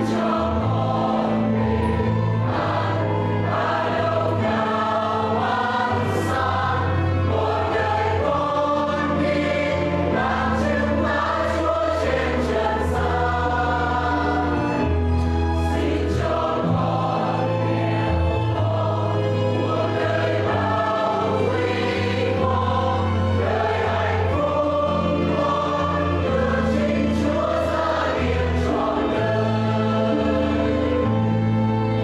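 A mixed church choir of men's and women's voices singing a hymn in long, held phrases.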